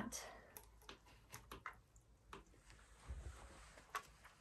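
Faint, scattered clicks and taps from a finger pressing the power button of a flat digital kitchen scale that fails to turn on.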